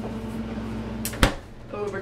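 A refrigerator's freezer door swung shut with a single thud about a second in, over a low steady hum.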